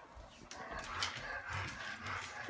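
A dog whining softly, starting about half a second in, with a single click about a second in.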